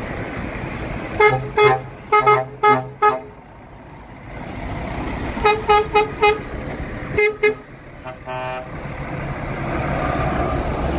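Truck horns sounding in short repeated blasts as trucks pass in a convoy: six quick toots in the first three seconds, four more a little past the middle, then two more. Near the end comes one longer blast from a different horn. The trucks' diesel engines are running underneath.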